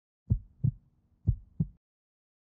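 Heartbeat sound effect: two low lub-dub heartbeats, about a second apart.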